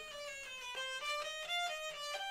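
Hurdy-gurdy by Walter Simons being played: the rosined wheel bows the newly fitted melody string (a violin A string) while the keys step through a quick melody of short notes. A low steady tone sounds underneath from about a third of the way in.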